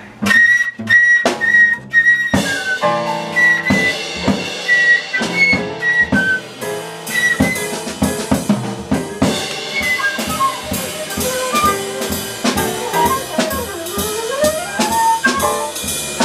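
Live jazz combo of flute, piano, double bass and drums playing instrumentally. It opens with about five sharp accented ensemble hits, each with a high flute note, then the flute plays a running melody over the band, dipping low and climbing back up near the end.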